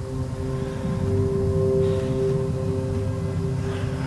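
A steady hum made of several held tones over a low drone, swelling slightly in the middle.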